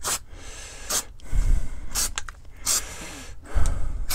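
Aerosol can of Rust-Oleum Multicolor Textured spray paint giving short, light bursts, about four brief hisses of spray, with a couple of low bumps of handling in between.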